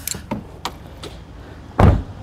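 A Chevrolet Corvette C8's driver door being shut with one loud thump near the end, after a few light clicks.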